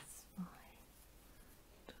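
Near silence between counted stitches: a soft breath at the start and a brief murmur of the voice about half a second in.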